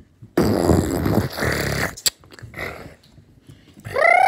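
A child making a loud, rough blowing noise with the mouth right up against the microphone, lasting about a second and a half, followed by a sharp click.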